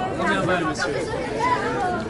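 Voices of several people talking over one another: chatter.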